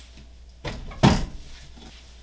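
A guitar amplifier head being set down on top of another amp head in a stack: a knock, then a louder thump less than half a second later.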